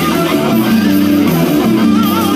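Electric bass and electric guitar playing an instrumental piece live together. A moving bass line runs under a guitar line with a wavering held note near the start.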